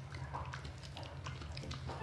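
Siberian husky chewing a raw meaty bone: faint, irregular crunches and clicks of teeth scraping down to the bone.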